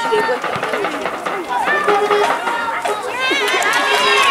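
Several high voices of footballers and spectators shouting and calling out during play on a football pitch, overlapping one another, over a thin steady held tone that comes and goes.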